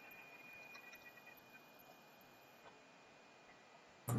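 Near silence: faint room tone with a few faint ticks in the first second.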